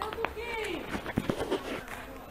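Faint voices in the background, with a few footsteps and handling knocks from a phone carried while walking.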